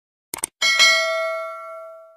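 Subscribe-button sound effect: a quick double mouse click, then a single bright bell ding that rings and fades away over about a second and a half.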